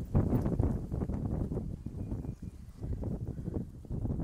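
Leaves rustling and pots scuffing as potted seedlings are pushed about by hand, with wind buffeting the microphone in an uneven, irregular rumble.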